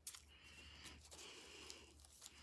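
Faint rustling of cards being handled, with a few light clicks.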